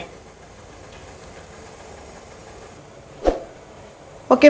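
Low, steady background hiss, broken once about three seconds in by a single short, sharp knock.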